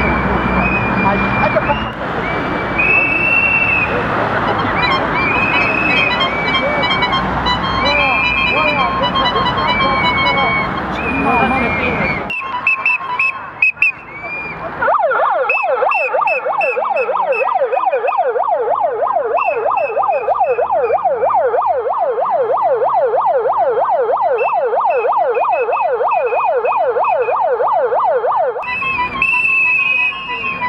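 Protest crowd noise with whistles being blown. About halfway in, a siren starts warbling rapidly, rising and falling about three times a second over the whistles, and stops shortly before the end.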